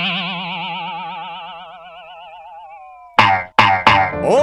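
Cartoon dizziness sound effect: a warbling, wobbling 'boing' tone that slowly falls in pitch and fades away over about three seconds. Near the end come three short, sharp hits.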